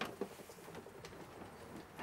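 Quiet background with one soft click at the very start as the wooden door of a small shower cabin is handled, followed by a few faint ticks.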